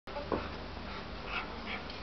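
Young German Shepherd dog panting, in a few soft breathy puffs, with one brief sharp sound near the start.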